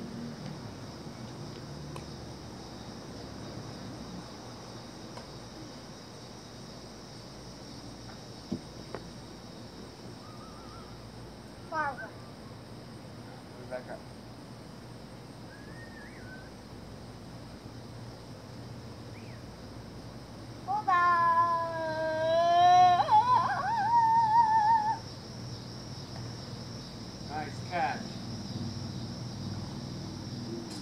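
A child's loud, high-pitched wordless cry or squeal, wavering in pitch for about four seconds, about two-thirds of the way in. Before it there are only a steady background hum and a few faint short chirps.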